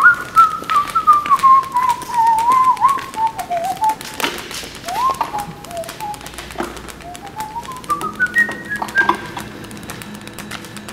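Someone whistling a single wandering melody line that slides slowly downward over the first few seconds, then climbs back up in small steps near the end. Scattered light clicks and knocks run underneath.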